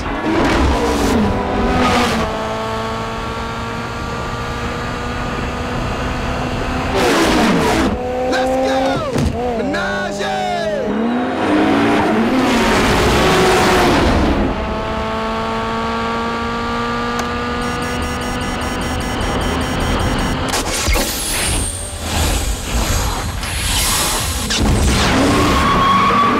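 Sports-car engines revving and accelerating hard in a film's street-race sound mix: engine notes climb and hold in several long pulls, with shouting voices and tyre noise between them.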